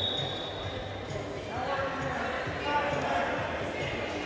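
The referee's whistle trails off, then arena hall sound: voices calling out from around the mat and dull thuds of the wrestlers' feet and bodies on the wrestling mat.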